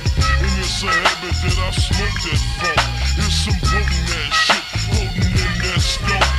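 Screwed hip hop track: a slowed, pitched-down beat with heavy bass and drum hits, and rapping over it.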